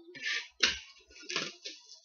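Cardboard trading-card hobby boxes being handled and slid off a stack: a few short scraping rustles, with a sharp knock a little over half a second in.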